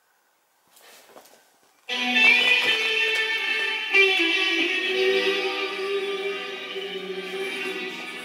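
Music playing from a television's speakers, picked up across a room. It starts abruptly about two seconds in, after a faint rustle, and carries on with sustained notes, with a fresh accent at about four seconds.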